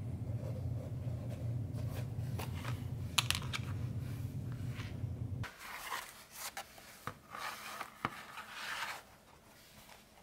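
Hand-stitching leather: thread drawn through the stitching holes with light clicks and scrapes, over a steady low hum that cuts off suddenly about five and a half seconds in. After that, leather panels slide and rustle against each other on a wooden table.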